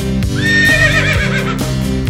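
A horse whinnying once, starting about a third of a second in: a high, quavering call that drops slowly in pitch over about a second. Background guitar music with a steady beat plays under it.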